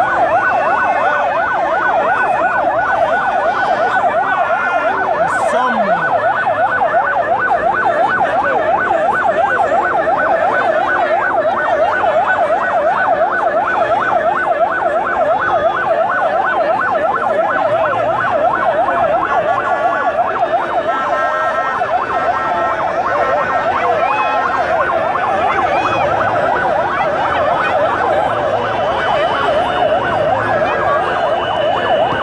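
Electronic vehicle siren in fast yelp mode, warbling rapidly up and down without a break.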